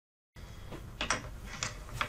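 A moment of dead silence, then low room hum with a few short clicks and taps of art supplies being handled on a tabletop.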